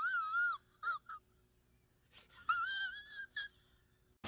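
A man's high-pitched, wavering whimpering wail, as in comic crying. It comes in two stretches with a couple of short squeaks between them, and the second stretch rises and then holds.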